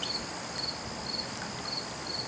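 A cricket chirping in the background: short, high-pitched pulsed chirps repeating about twice a second over a faint hiss.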